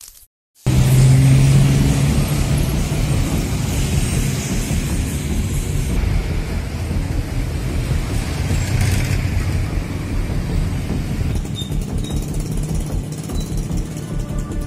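Street traffic dominated by motorcycles, starting abruptly under a second in, with background music underneath.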